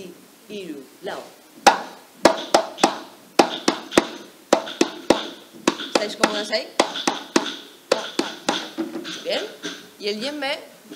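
A djembe struck by hand in a rhythmic pattern of sharp strokes, about two to three a second, starting a couple of seconds in, with a woman's voice speaking between the strokes.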